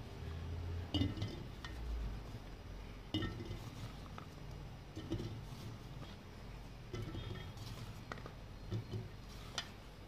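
Green olives dropped by hand into an empty glass jar: scattered faint knocks and clinks against the glass, one every second or two.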